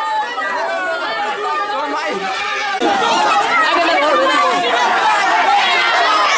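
A celebrating crowd of many voices shouting over one another, getting louder about three seconds in.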